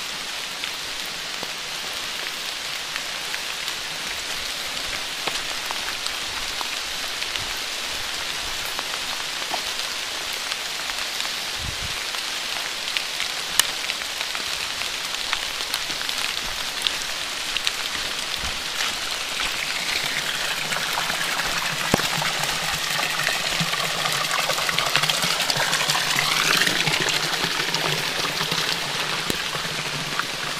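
Steady rain falling on wet ground, leaves and concrete, with scattered drip clicks. Running water joins in and grows louder from about two-thirds of the way through.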